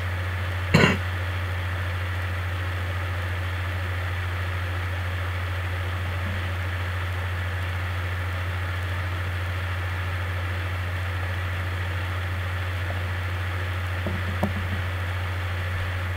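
Steady low electrical hum with an even hiss behind it, the background noise of the recording setup, broken once about a second in by a short burst of noise.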